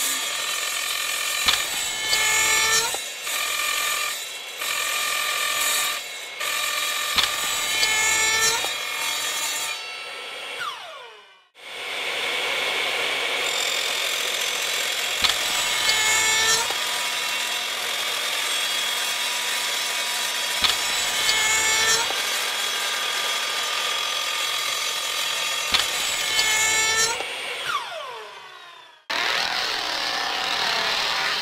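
Circular-blade power saw cutting through a pool cue, the wrapped butt and then the wooden shaft, with a steady motor whine. A sharp snap comes every few seconds as the blade goes through and a piece drops off, the pitch dipping briefly each time. The saw winds down to a stop about ten seconds in, starts up again, and winds down once more near the end.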